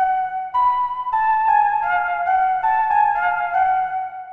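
Software flute melody from an Omnisphere patch, layered over keys: a simple line of held notes stepping up and down about every half second, with a faint steady low tone beneath.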